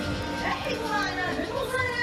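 Background arena music with several voices calling out and cheering over it.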